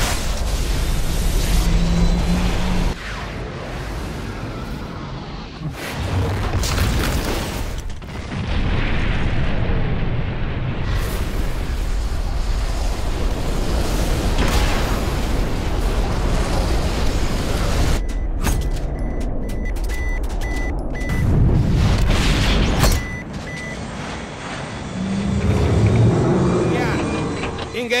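Film sound effects of missile explosions hitting a spaceship: repeated loud booms and a deep rumble over music. A row of short high electronic warning beeps comes about two-thirds of the way through.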